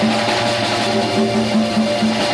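A live band playing music: an electronic keyboard with drums and hand-drum percussion.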